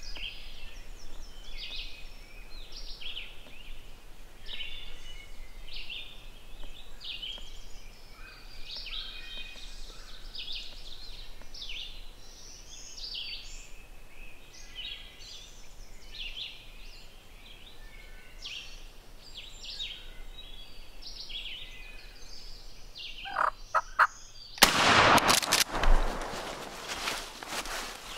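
Eastern wild turkeys calling, with many short bird calls throughout. A loud burst comes about a second before the end.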